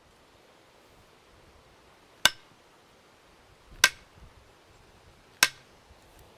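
Three sharp strikes of a hatchet on the end of a hickory handle, about a second and a half apart, each ringing briefly. The blows drive the handle into the tool head's eye to seat the loose head tight.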